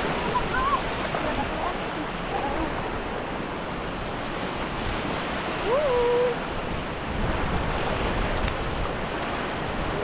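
Sea surf washing in around the shallows as a steady rush, with a short voice call about six seconds in.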